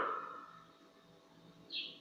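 A pause in speech: the last word dies away, then quiet room tone broken by one brief high-pitched chirp near the end.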